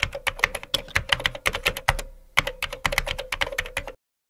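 Keyboard-typing sound effect: a quick run of key clicks, about seven a second, with a short break about two seconds in.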